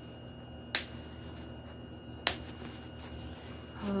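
Plastic snap fasteners on a PUL cloth diaper cover popping: two sharp clicks about a second and a half apart.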